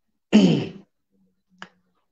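A man's voice gives one short spoken syllable that falls in pitch, followed by a single faint click about a second and a half in.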